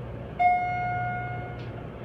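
Elevator chime ringing once about half a second in: a single clear ding that fades over about a second. A steady low hum of the moving car runs underneath.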